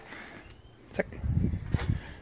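Cast-iron Dutch oven lid being picked up and handled: two short, sharp clicks about three-quarters of a second apart.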